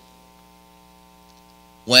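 Faint, steady electrical mains hum, a stack of even unchanging tones, in a pause between words. A man's speaking voice comes in just before the end.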